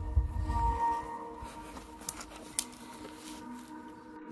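Handling noise on the camera microphone: a low rumble and knocks in the first second, then two sharp clicks a little after two seconds in. Faint steady background music runs underneath.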